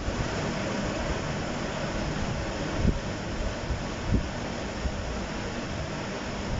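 Steady background hiss and rumble of the recording microphone, with two soft low thumps about three and four seconds in.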